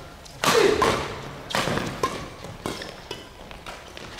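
Badminton rally in a large echoing hall: several sharp racket strikes on the shuttlecock mixed with players' footfalls on the court, the loudest about half a second in.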